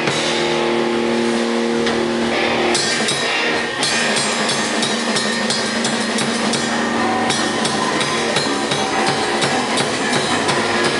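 Live rock band playing loud: electric guitar over a drum kit with cymbals. Notes are held for the first few seconds, then the playing turns busier.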